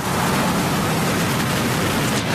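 A large pickup truck driving past close by: a steady rush of engine and tyre noise.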